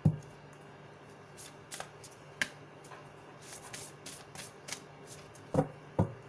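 A deck of oracle cards being shuffled by hand: scattered light flicks and clicks of cards, with a sharp louder knock at the start and another near the end.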